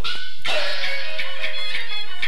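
Peking opera aria from a 1932 Pathé gramophone record: a painted-face (jing) voice holds one long note from about half a second in, over the accompaniment, with clicks and a steady hum from the old disc.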